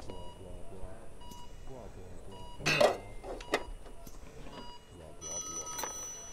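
A desk telephone starts ringing near the end, a brief steady ring just before its receiver is picked up. Earlier there is a loud short sound about halfway through, over faint voices.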